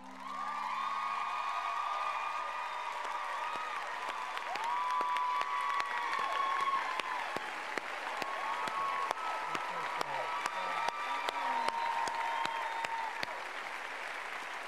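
Studio audience applauding and cheering: dense clapping with whoops and shouts rising over it.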